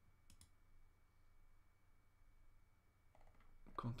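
Two quick, faint clicks at a computer, a split second apart just after the start, then near silence.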